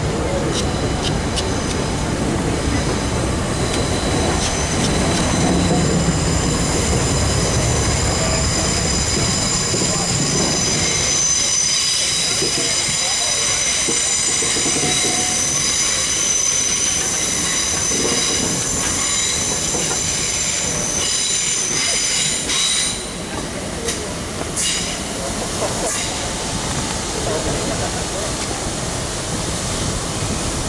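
A passenger train moving slowly, its wheels squealing in several high, steady tones for much of the time over a low rumble. The rumble fades about ten seconds in, and the squeal stops a little over twenty seconds in.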